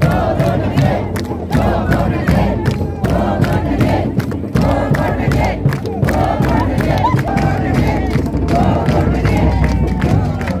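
A crowd of women chanting and shouting together with continuous hand clapping.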